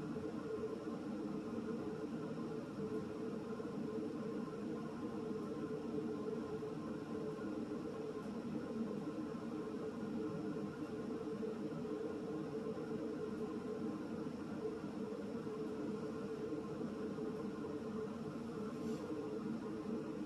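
Steady, even room hum with no distinct events, the kind of constant background noise a running fan or air-conditioning unit leaves in a small room.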